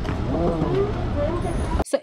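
Airport terminal background: a steady low rumble with faint voices of people around, which cuts off suddenly near the end.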